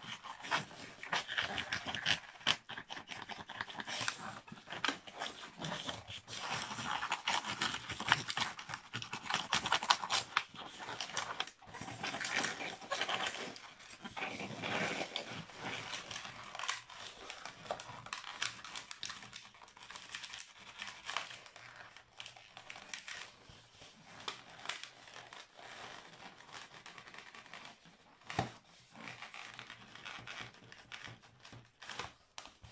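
Inflated latex modelling balloon squeaking and rubbing under the hands as it is squeezed and twisted into a heart shape. It is busiest in the first half and quieter in the last third.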